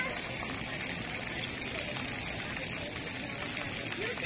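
Splash pad water jets spraying onto wet concrete, a steady gushing hiss.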